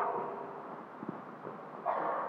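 Pause in a sermon: the preacher's voice rings on in the hall's reverberation after the last word and fades over about half a second, leaving low room noise with a faint click about a second in.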